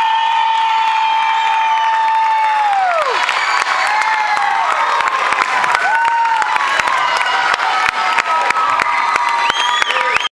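Audience clapping and cheering, with a long high whoop that falls away about three seconds in and shorter whoops after it.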